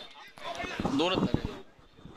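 Faint shouts and calls from players and onlookers, with a few light knocks, lasting about a second from half a second in.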